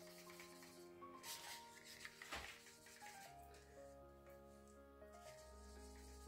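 Faint background music with soft sustained notes, near silence overall. A few quiet scrapes of a stirring stick against the cup can be heard as acrylic paint is stirred.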